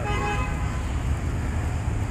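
Low steady rumble of street traffic, with a short faint tone near the start.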